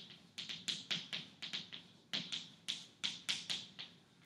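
Chalk writing on a blackboard: a run of quick, sharp taps, about four a second, that stops near the end.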